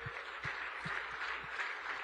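Audience applauding steadily, with a few low thumps standing out in the first second and a half.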